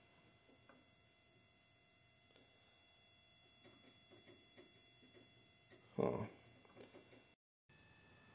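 Faint steady electrical whine from the high-voltage transformer powering a homemade electron-beam tube, with a short vocal sound about six seconds in and a brief dropout near the end.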